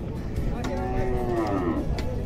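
A cow mooing once: a call of just over a second that starts about half a second in and drops in pitch at the end, over a low background rumble.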